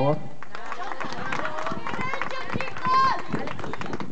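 A small group of people clapping by hand, in scattered, uneven claps, with voices talking over the clapping.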